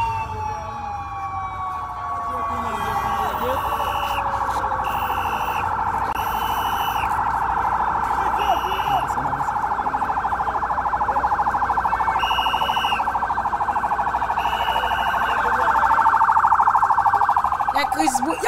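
Police sirens: one wail falls away over the first few seconds while another keeps up a fast, steady warble that swells near the end. About eight short high-pitched blasts cut in over it.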